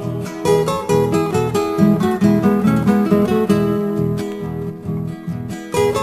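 Instrumental break of a folk song with no singing: acoustic guitars strumming in a steady rhythm and picking a melody.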